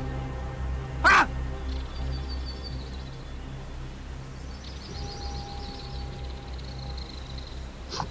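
Dramatic background music with a low sustained drone and held tones. About a second in, a man gives one sharp 'Ha!'. Faint high bird twittering comes in twice.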